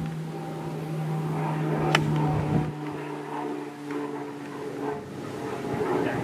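An iron striking a golf ball once, about two seconds in: a single sharp click. Under it is the steady hum of an engine, which stops about five seconds in.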